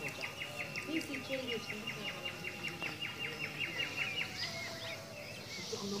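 A songbird singing one long, even trill of rapid repeated notes, about six a second, which stops about four and a half seconds in. Lower calls or distant voices wander underneath.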